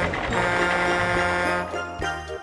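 Background music: sustained chords over a steady bass line.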